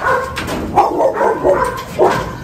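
A dog whining and yipping, about four short pitched calls in a row.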